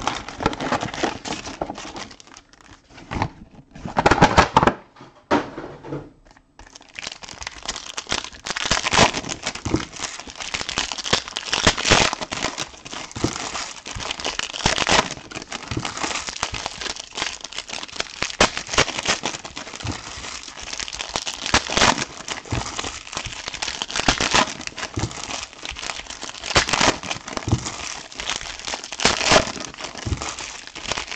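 Foil trading-card pack wrappers crinkling and tearing as packs are opened, with cards being handled. The sound is patchy for the first few seconds, with a loud burst around four seconds in, then a near-continuous crackle from about six seconds in.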